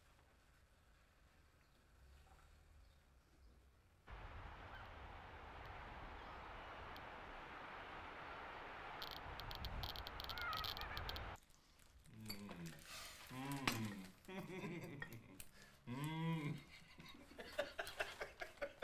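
Quiet room tone, then about four seconds in a steady rush of wind and surf on a shingle beach with a few sharp clicks, which cuts off suddenly about eleven seconds in. After that a voice makes short sounds that rise and fall in pitch.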